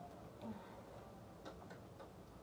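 Quiet room tone with a few faint short clicks, one about half a second in and two close together near the end.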